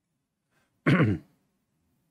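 A man clearing his throat once, a short throaty sound falling in pitch about a second in.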